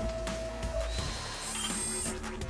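Opening-title music with mechanical sound effects. A steady tone stops about a second in, then a faint rising tone and a high, buzzing whir come in near the end.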